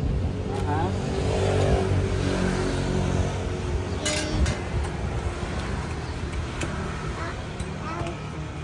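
A motor vehicle passing on the street with a steady engine drone that swells in the first few seconds, over a constant background hum. A few sharp metal clicks from a spatula and knife against the iron griddle and the cutting surface, the loudest about four seconds in.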